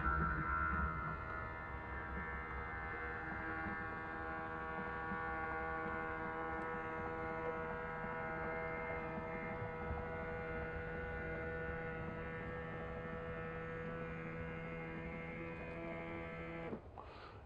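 Electric motor of a powered RV patio awning running as the awning rolls out, a steady even hum.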